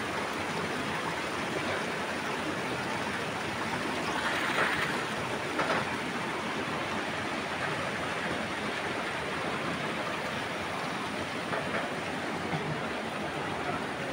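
A steady rushing outdoor noise, even and without pitch, swelling slightly about four to five seconds in, with a brief louder rustle just before six seconds.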